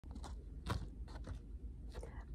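Faint rustles and light taps of a paper picture board being handled and lifted, about half a dozen short clicks, the loudest a little under a second in.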